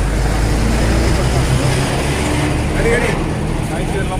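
A vehicle's engine idling with a low, steady hum, under the voices of people standing close by, with a brief spoken burst about three seconds in.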